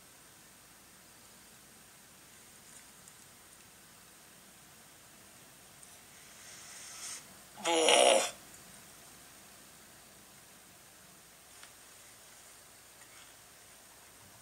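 A man gagging on a mouthful of bruised banana: a breath drawn in, then one short, loud, throaty gag that drops in pitch, about eight seconds in.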